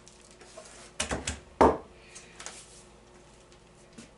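Sharp clicks and knocks from a pneumatic staple gun and wooden beehive frames being handled on a workbench. A quick cluster comes about a second in, the loudest knock follows just after, and then a couple of fainter clicks.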